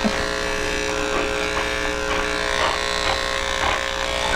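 Electric animal hair clippers running with a steady, even hum as they shave the fur around a dog's bite wound.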